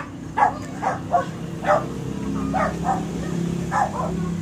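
A dog barking in a string of short, sharp barks, about ten of them over a few seconds.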